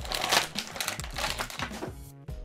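Clear plastic packaging crinkling and crackling as an action figure is pulled out of its tray, in a string of irregular crackles.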